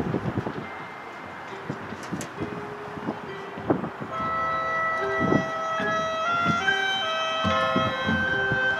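A marching band's front ensemble plays a quiet passage: long held tones over scattered low drum hits. About four seconds in, a fuller chord of high held notes comes in and shifts from note to note.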